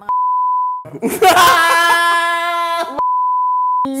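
A steady 1 kHz censor bleep, then a long drawn-out vocal sound, then a second bleep near the end: the answer is bleeped out.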